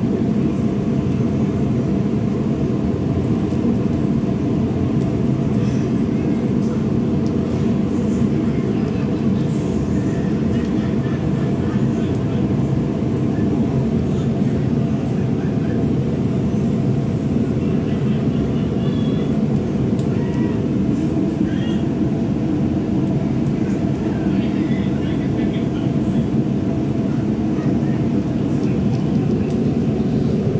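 Gas wok-range burner running on high under an empty steel wok, a loud, steady rush of flame, as the new pan is burned in.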